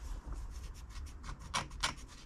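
Fingers rubbing and scraping on a small glazed ceramic bonsai pot as it is gripped and worked by hand: a run of short scratchy scrapes, the two loudest near the end.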